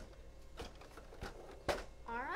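A few sharp knocks and taps of a plastic vinyl cutter, a Silhouette Cameo 4, being handled and turned around on a tabletop, the loudest knock near the end.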